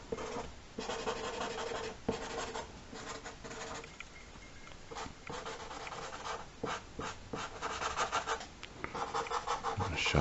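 Sharpie permanent marker scratching across paper in a run of short, irregular strokes as it fills in solid black shadow, the strokes growing louder and quicker in the last few seconds.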